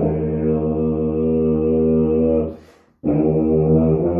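Solo tuba holding a long, steady low note that fades out about two and a half seconds in. A quick breath follows, then a new note starts at about three seconds.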